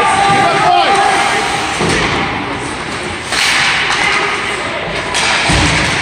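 Ice hockey game sounds in an indoor rink: two heavy thuds, about two seconds in and near the end, typical of the puck or players hitting the boards, over spectators' voices.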